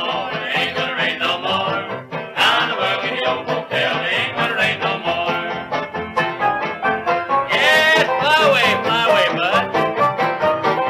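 Instrumental break from a 1937 western string band on a 78 rpm record. A fiddle plays a sliding, wavering lead line over a steady rhythm from tenor banjo, guitar, piano and string bass.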